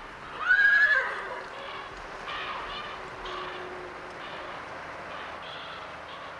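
A horse whinnies loudly about half a second in, a high call that drops in pitch, followed by softer, evenly spaced sounds of the horse moving off under its rider.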